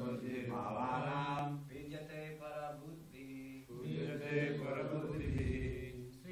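Voices chanting a Sanskrit verse in a slow recitation melody, holding long notes phrase by phrase, with a short break about three seconds in.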